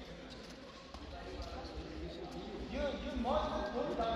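Indistinct voices murmuring in a large, echoing hall, with one voice coming up louder about three seconds in, over a low, uneven thumping.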